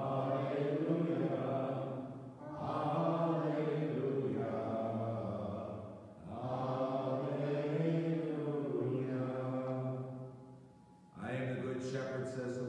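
A priest chanting a liturgical text unaccompanied in a man's voice: long, evenly pitched sung phrases with short breaks between them, a fourth phrase starting near the end.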